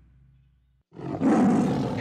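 A tiger's roar played as a sound effect, starting suddenly about a second in after a brief near-silent gap.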